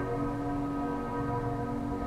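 Intro sound effect: a sustained ringing chord of several steady pitches, like struck metal ringing out after an impact, holding almost unchanged.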